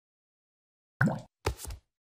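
Two short cartoon-style plop and knock sound effects of an animated logo intro, about half a second apart, starting a second in after a silence.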